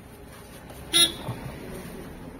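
A short vehicle horn toot about a second in, over low background noise.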